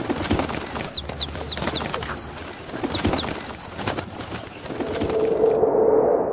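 Cartoon sound effect of a small bird twittering in quick, falling chirps, with fluttering wing flaps and sharp clicks, for about the first four seconds. Then a mid-pitched swell builds over the last second or so.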